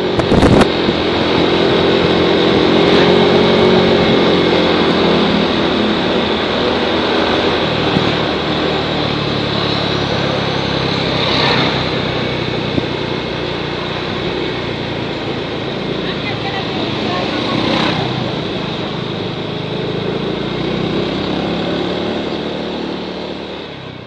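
Motor scooter engine running steadily while riding along a street, with wind rushing over the microphone. A short loud clatter comes right at the start.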